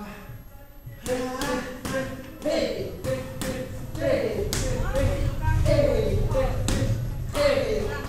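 Punches and kicks smacking into Muay Thai pads, about a dozen sharp hits starting about a second in and coming faster and louder later on, with short vocal shouts on several of the strikes.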